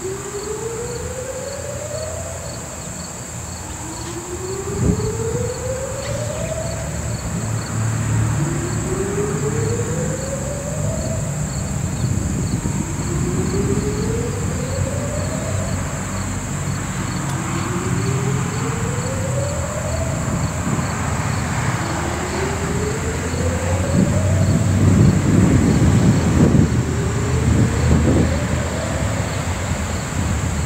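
Insects trilling steadily with a high, unbroken buzz and a faster pulsing chirp. Under them, a faint tone rises in pitch about every four seconds, and a low rumble swells near the end.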